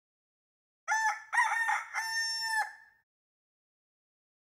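A rooster crowing once, starting about a second in: two short notes and then a long held note that cuts off sharply.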